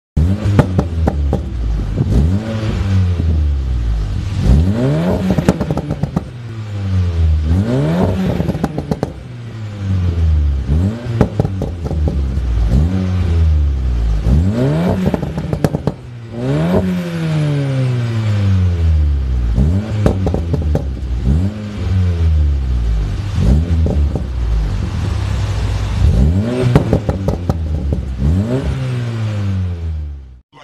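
Volkswagen Golf's turbocharged four-cylinder engine, heard through a Scorpion full-system aftermarket exhaust, being revved in repeated blips while the car stands still. The revs climb quickly and drop back more slowly, about ten times, with a loud, deep exhaust note.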